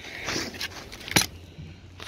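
Handling noise as a differential unit is touched and moved on cardboard: a soft rustle, then a single sharp click about a second in, over a low steady hum.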